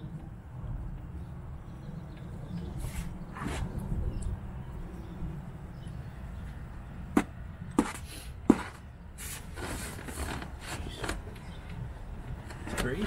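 Handling noises from someone working in a car's footwell: soft rustles and three short sharp clicks around the middle, over a low steady rumble.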